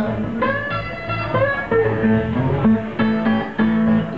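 Instrumental blues passage on two guitars, an electric guitar and a resonator guitar, with bending, sustained notes over a repeated low bass figure.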